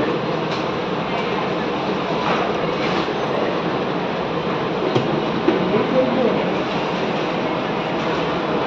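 Steady café background noise, a loud even rush of machinery with faint voices under it and a few light clicks.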